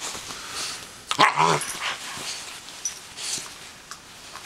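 Greater Swiss Mountain Dog puppy giving one short growling bark about a second in, the loudest sound here, with softer rustling and huffing around it during rough play.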